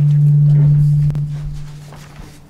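Public address system feeding back: a loud, steady low tone through the hall's speakers, caused by the microphone volume being set too high. It starts dying away about a second in.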